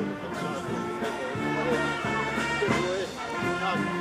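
A brass band playing live, holding sustained brass chords, with people talking close by over the music.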